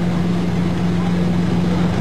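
Offshore racing powerboat engine running at a steady, unbroken drone, a constant low hum over a wash of noise.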